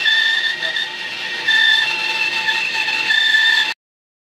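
Benchtop bandsaw cutting a block of wood: a steady high-pitched whine with the hiss of the blade through the wood, louder in stretches as the block is fed into the blade. It cuts off abruptly near the end.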